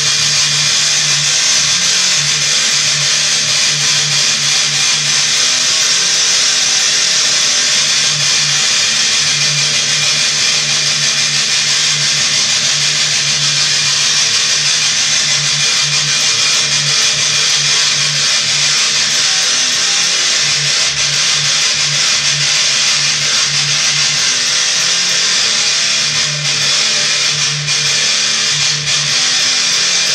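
Distorted electric guitar through a high-gain amp, played with fast palm-muted downstrokes: a continuous chugging riff without breaks, its low notes dropping in and out every few seconds.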